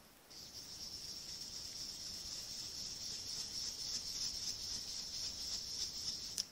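Round ink blending brush swirled over cardstock: a steady, scratchy hiss of bristles rubbing on paper as ink is blended on.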